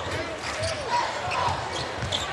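Basketball game sound in an arena: a ball dribbling on the hardwood court over steady crowd noise.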